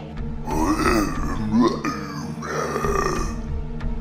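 Children making imitation Sasquatch calls with their voices, three rough calls in a row, the last the longest.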